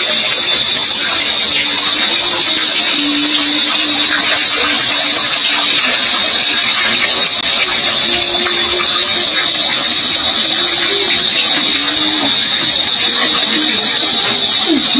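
Water pouring in thin streams from a bamboo fountain and splashing steadily into a wishing well.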